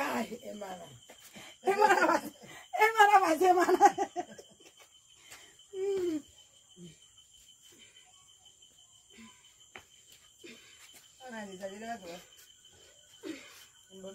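People talking and laughing, loudest between about two and four seconds in, with shorter bursts of voice later. A faint steady high-pitched tone sits behind them.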